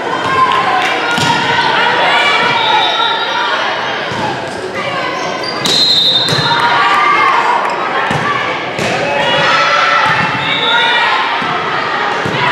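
Volleyball rally in a gymnasium: the ball is struck several times amid players' calls and spectators' voices, all echoing in the hall. A few short, high squeaks come through, the loudest just before halfway.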